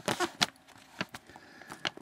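Scattered light clicks and rustles from a slope-gauge card being handled and shifted over a paper map, about five small ticks spread across two seconds.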